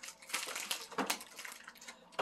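Faint, irregular crackling and small clicks, with a slightly louder crackle about a second in.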